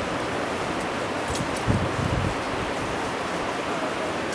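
Steady rushing outdoor noise, with a brief low rumble about two seconds in.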